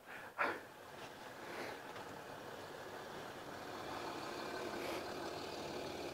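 Land Rover Discovery 3 driving slowly closer on a muddy woodland track, its engine a faint, even noise that grows gradually louder as it approaches.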